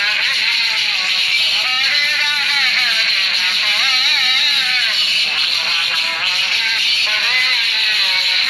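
A voice singing a devotional chant in long, wavering held notes, over a steady hiss.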